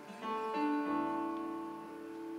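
Steel-string acoustic guitar playing a song's opening, a chord struck about a quarter second in and changing again about a second in, the notes left to ring.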